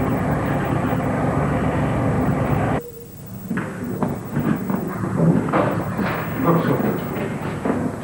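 A steady, dense mechanical rumble that cuts off abruptly about three seconds in. After it come quieter rustling and handling noises with faint voices.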